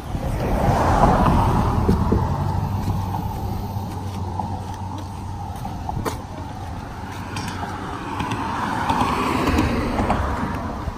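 Cars passing close by on the roadway. One goes by in the first few seconds, swelling and fading with a low engine hum, and another approaches and passes near the end.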